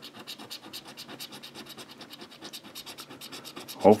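Scratching the coating off a California Lottery $20 Crossword scratch-off ticket, in rapid, even scraping strokes.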